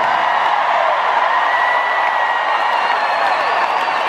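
Large arena crowd cheering and applauding in response to thanks from the stage, with a long high call held for about two seconds in the middle.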